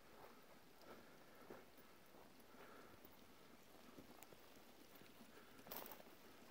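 Near silence with faint footsteps on snow and mud: a few soft, irregular steps, one a little louder near the end.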